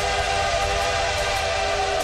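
A train whistle sound effect held as one steady chord over the pulsing bass of an electronic dance track.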